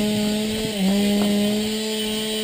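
Husqvarna 365 two-stroke chainsaw engine driving a Lewis chainsaw winch, running steadily at an even, high pitch as the winch pulls a boulder on its cable. About a second in, the pitch sags briefly under the load and then recovers; the saw is underpowered for the winch.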